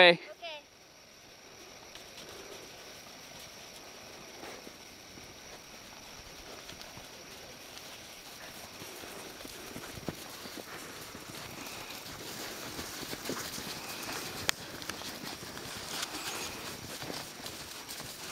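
Horses' hooves crunching and thudding through snow, the steps getting louder toward the end as a ridden horse comes close.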